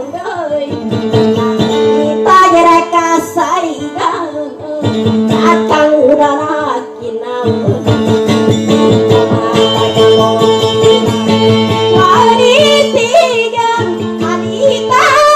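A woman singing a Maranao dayunday song, accompanying herself on acoustic guitar, in long melodic phrases.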